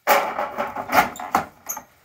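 Wooden oven door set into the brick-arched mouth of a wood-fired cob oven, scraping and knocking against the brick. There is a harder knock about a second in and short high squeaks near the end.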